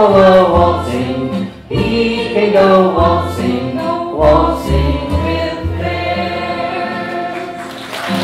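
A group of voices singing the closing line of a silly folk song together with an old-time string band of acoustic guitars, fiddles, banjo and upright bass. The song ends on a long held final chord.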